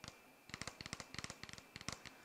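Fingernails drumming on a hard surface, a quick irregular run of about a dozen faint clicking taps.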